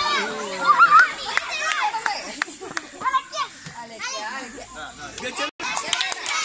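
A crowd of young children shouting, squealing and calling over one another in an outdoor game of musical chairs, with a few sharp clicks scattered through.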